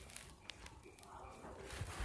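A girl's soft, faint yawn, with a single small click about half a second in.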